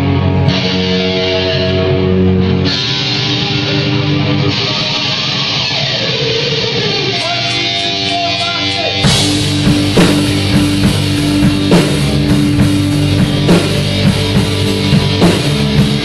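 Live punk rock band playing a song intro: distorted electric guitar chords ring out, with a downward slide around the middle. About nine seconds in, the bass and drum kit come in and the full band plays a steady beat.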